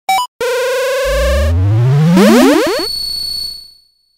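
Retro video-game style synthesizer sound effect: a short blip, then a held electronic tone joined by a pitch sweep that rises for about two seconds, with quick rising glides, fading out near the end.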